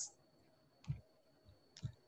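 Two faint clicks of a computer mouse, about a second apart, during a pause in speech.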